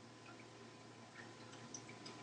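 Near silence: faint room tone with a couple of tiny ticks late on.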